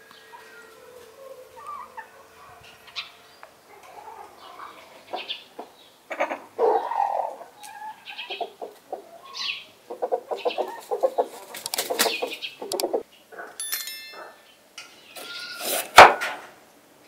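Chickens clucking, a run of short calls that grows busier toward the middle, with a sharp knock right at the end.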